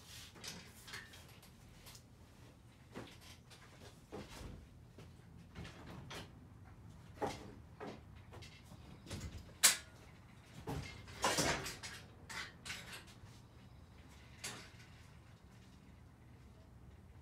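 Scattered knocks, clicks and rattles of things being handled and moved about in a garage, with one sharp knock about ten seconds in and a run of clatter a second or so after it.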